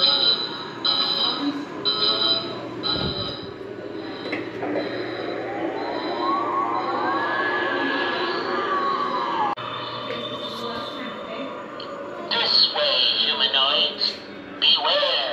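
Electronic sci-fi sound effects from a blacklight alien attraction's sound system: a pulsed high tone repeating about once a second for the first few seconds, then a long sweeping tone that rises and falls back.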